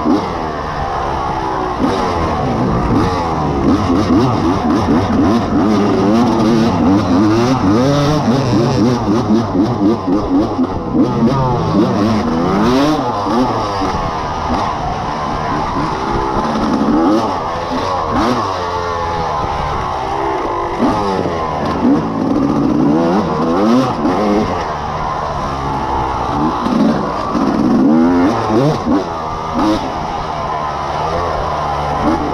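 Off-road dirt bike engine ridden hard, heard from the rider's helmet, revving up and down over and over with pitch rising and falling continuously as the throttle is worked along the trail.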